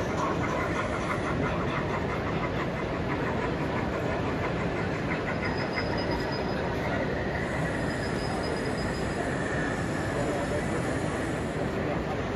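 Model steam locomotive and coaches running along the layout track, with a quick rhythmic clicking in the first few seconds, over the steady crowd hubbub of a busy exhibition hall.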